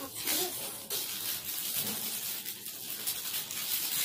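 Plastic packaging crinkling and rustling as hands open a plastic mailer pouch and pull out a bag in a clear plastic wrap, a continuous irregular crackle.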